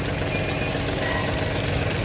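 Tractor engine running steadily, pulling a no-till water-wheel transplanter through rolled-down rye.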